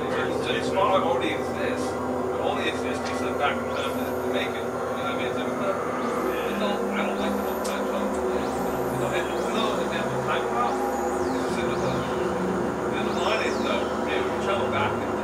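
Layered experimental electronic drones: several steady held synthesizer tones, with the low notes shifting in blocks partway through. Scattered crackles and, in the second half, falling high whistling sweeps run over the drone.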